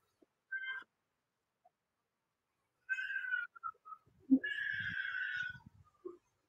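Three short, high-pitched animal calls, like meowing, the last held for about a second, with faint low noise under it.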